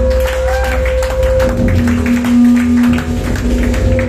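Live rock band playing: electric guitar, bass guitar and drums, loud, with one long guitar note held over the drums and a lower note swelling in about halfway through.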